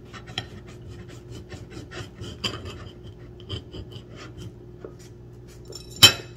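A knife sawing through the skin at the stem end of a tamarillo on a plate: a run of short, irregular rasping strokes.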